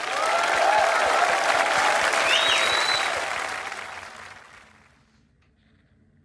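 Studio audience applauding and cheering at the end of a live song, with whoops and a whistle above the clapping. The applause fades out about four to five seconds in.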